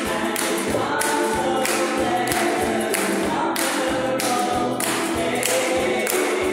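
Several voices singing together, accompanied by strummed ukuleles and a banjo. The strums fall in a steady beat, roughly one every half second or a little more.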